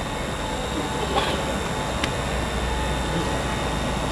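Steady outdoor background noise with a low rumble that grows a little in the second half, and a faint click about two seconds in.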